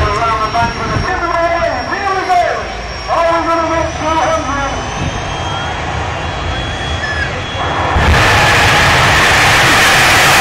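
Drag-racing jet car's jet engine: a bang at the start, then a faint high whine under nearby voices, and about eight seconds in a sudden jump to a loud, steady rush of noise as the engine goes to full thrust for its run.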